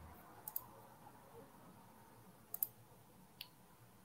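Faint computer mouse clicks: a quick double-click about half a second in, another double-click a little past halfway, then a single click, over quiet room tone.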